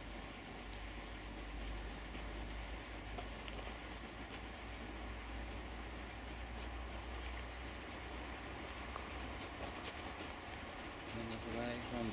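Steady low rumble under an even hiss of outdoor background noise, with a few faint ticks near the end.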